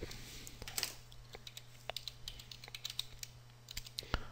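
Typing on a computer keyboard: a quick run of faint, irregular key clicks.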